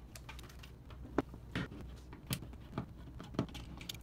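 Scattered light clicks and taps of a screwdriver and a plastic switch cover plate as the plate is lifted off and the wall switch's mounting screws are backed out, about half a dozen sharp ticks in all. A faint low hum runs underneath.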